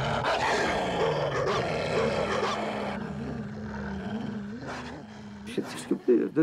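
A wolf growling: one long rough growl that starts suddenly and fades away over about five seconds.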